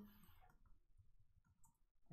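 Faint computer keyboard typing: a few soft, scattered key clicks.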